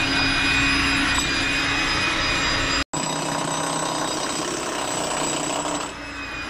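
Hilti TE 800-AVR electric demolition hammer running continuously as it chisels into concrete, a dense hammering racket with a faint steady hum. It breaks off for an instant about three seconds in, then carries on.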